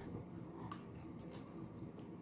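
Faint chewing of a mouthful of crisp salad lettuce, heard as a few soft, short crunching clicks.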